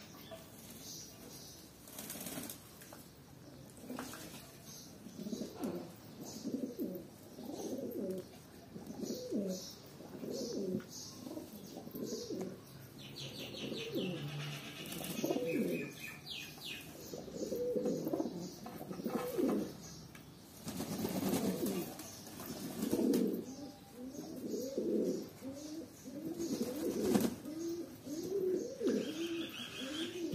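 A flock of domestic pigeons cooing over and over, short low coos from several birds coming about once a second and growing more frequent after the first few seconds.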